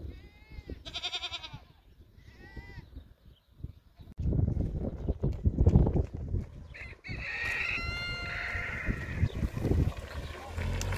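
Farm animals calling: two short calls in the first three seconds, then a longer call of about two seconds from about seven seconds in. Loud low thuds and rumble fill the stretch from about four to seven seconds.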